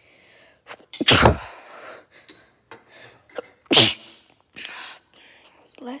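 A person sneezing twice, about a second in and again a little before four seconds; the two sneezes are the loudest sounds.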